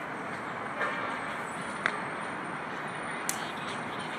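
Steady outdoor ambient noise of a city park, a continuous hiss-like background, with a couple of faint clicks about two and three seconds in.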